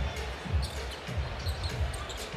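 Basketball being dribbled on a hardwood court, a low thump roughly every half second, over steady arena background noise.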